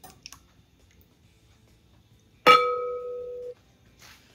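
A glass clink: glassware is struck once about two and a half seconds in and rings with a steady tone for about a second before it cuts off suddenly. A few faint clicks come just before, near the start.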